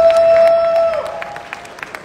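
Scattered audience applause, with a voice holding one long drawn-out shouted call that ends about halfway through; the clapping thins out after it.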